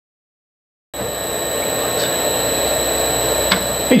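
Electric motor on a Siemens SINAMICS G120X variable frequency drive demo rig running steadily. It makes a fan-like whooshing noise with a thin, steady high whine that is typical of the drive's switching. The sound starts suddenly about a second in, with a couple of faint ticks.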